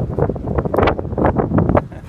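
Wind gusting on the microphone: a loud, uneven noise that comes and goes throughout.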